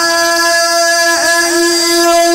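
A Quran reciter's voice holding one long, steady note in melodic recitation, with two brief dips in pitch a little over a second in.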